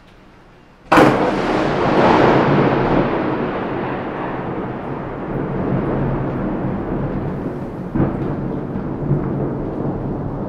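Thunder: a sharp crack about a second in that rolls off into a long, slowly fading rumble, with a second, smaller crack near the end.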